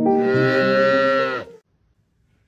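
A cat's long, drawn-out yowl lasting about a second and a half, dropping in pitch at the end before cutting off.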